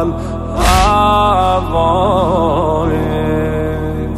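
A male voice sings a slow, mournful devotional lament with long wavering, ornamented notes over a steady low sustained backing. A single sudden heavy thump comes about half a second in.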